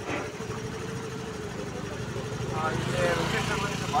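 Two-wheeler engine running steadily with a low hum, with people's voices over it in the second half.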